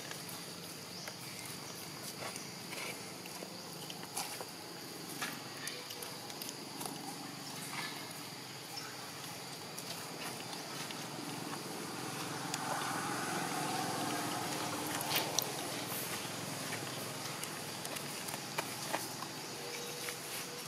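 Faint murmur of distant human voices over outdoor background, swelling a little past the middle. A thin, steady, high-pitched drone and scattered light clicks run underneath.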